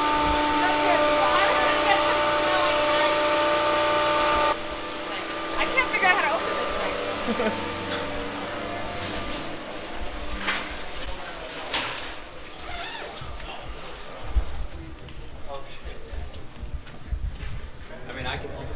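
Steady multi-toned hum of ice rink refrigeration machinery, with voices over it, cutting off abruptly about four and a half seconds in. After that comes the murmur of a busy hallway: indistinct chatter and scattered knocks, with one louder thump near the end.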